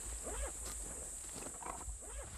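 Footsteps and a walking stick on a pine-needle forest slope, under a steady, high insect drone, with a few faint voice sounds.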